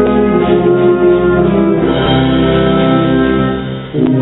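Wind band (banda de música) playing a slow Holy Week processional march: sustained, organ-like chords that change every second or so, dipping in level just before the end.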